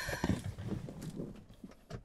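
Paper shopping bag being handled: light, irregular crinkles and taps that grow fainter toward the end.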